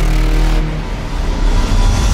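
Cinematic logo-sting sound design: a loud, deep rumble with a dense hiss over it, dipping slightly about halfway through and building again near the end.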